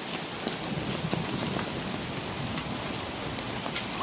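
Heavy rain mixed with small hail falling on foliage and a stone path: a steady hiss with scattered sharp ticks.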